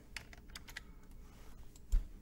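A few light computer keyboard keystrokes and clicks, as a copied flow is pasted into a text box, followed by a louder, deeper thump just before the end.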